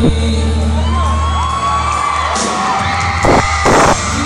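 A live band playing, with a steady bass line, and the crowd whooping and cheering over it. Two loud thumps come near the end.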